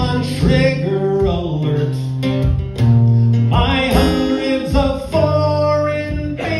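A man singing while playing an acoustic guitar: a live folk-style song.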